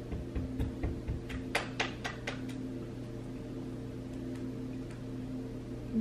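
Quiet room with a steady low hum, a few soft thumps in the first second, and a quick run of sharp clicks around two seconds in.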